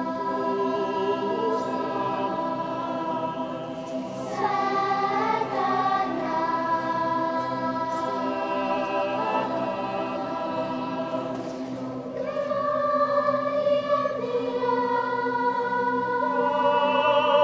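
A choir singing in slow, long held chords, with the voices moving to new notes together about four seconds in and again about twelve seconds in.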